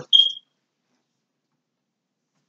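Dead silence, after a brief high-pitched chirp right at the start.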